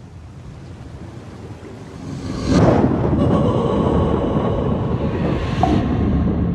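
Film-trailer sound design: a low hiss that swells about two and a half seconds in into a loud, sustained rumble with a faint steady tone running through it.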